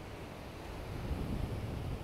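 Steady rush of surf breaking on a sandy beach, with wind rumbling on the microphone; the noise swells slightly toward the end.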